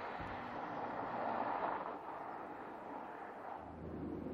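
Porsche Panamera 4 E-Hybrid Sport Turismo driving along a road: mostly tyre and wind noise with no distinct engine note, swelling slightly and then easing, with a low rumble coming in near the end.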